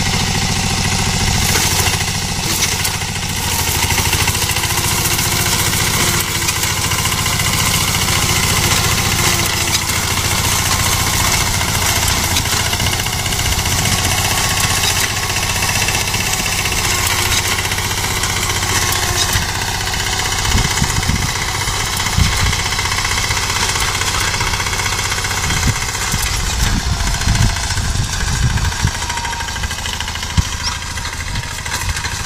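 Small engine of a self-propelled reaper-binder running steadily under load as it cuts wheat, with a few short low thumps in the last third.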